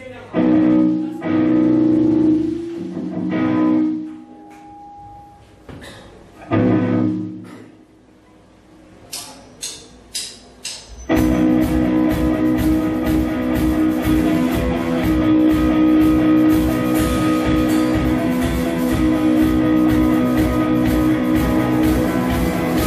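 Live grunge rock band on electric guitars, bass and drum kit: a few loose chords ring out and stop, a handful of sharp clicks follow, and about halfway through the full band comes in loud with a fast, steady drum beat under distorted guitar chords.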